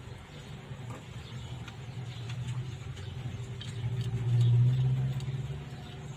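A low, steady engine hum that swells louder about four seconds in, with faint light clicks from metal lock parts being handled.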